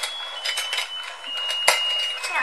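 Battery-powered musical shark fishing game running: its electronic sounder plays a thin, high tune in held notes stepping down in pitch, over light plastic clicks from the game's moving parts, with one sharper click near the end.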